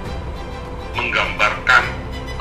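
Steady background music with a man's voice speaking Indonesian in short bursts from about a second in.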